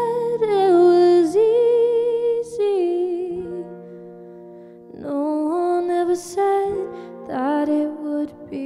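A woman singing a slow song to her own electric guitar chords. The voice drops out for a moment in the middle while the guitar chord rings on, then comes back in.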